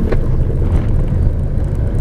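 Car engine and road noise heard from inside the cabin while driving: a steady low rumble.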